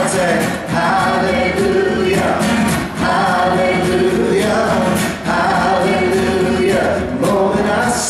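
Live acoustic performance: male and female voices singing together in harmony over strummed acoustic guitars, continuous throughout.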